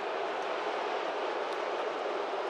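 Steady crowd noise of a ballpark full of fans, an even wash with no single voice or sound standing out.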